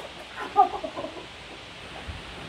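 A child's short, high-pitched vocal sounds, not words, in the first second, then a quieter stretch.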